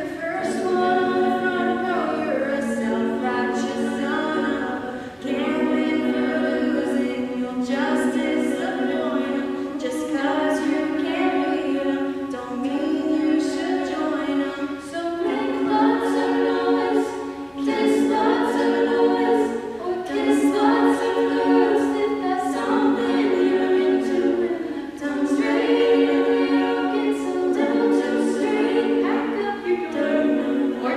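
A student a cappella group of about eight voices singing close-harmony chords with no instruments, the lowest part held steady under moving upper lines. There are brief breaks between phrases about five seconds in and again near the middle.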